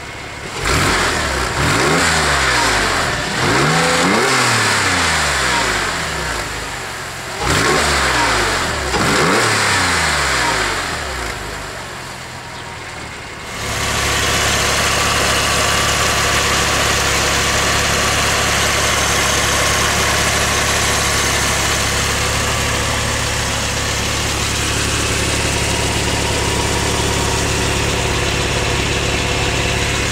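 A 2002 Porsche 911 Carrera's 3.6-litre flat-six is revved several times in two bursts, its pitch climbing and falling with each blip, heard first at the tailpipes. About 14 seconds in it settles to a steady idle, heard up close in the engine bay.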